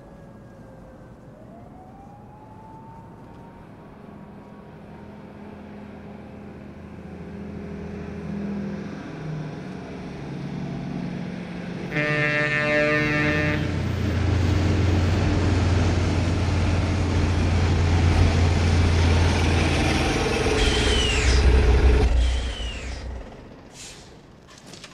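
A heavy truck approaching, its engine growing louder. About halfway through it gives a sudden air-horn blast of roughly a second and a half. The engine then runs loud, and brakes squeal near the end before the sound drops away sharply.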